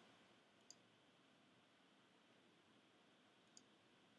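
Near silence with two faint computer clicks, one about a second in and one near the end, as the pointer clicks a page-forward arrow.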